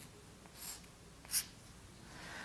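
Chalk scratching on a blackboard in three short strokes as a term is written out.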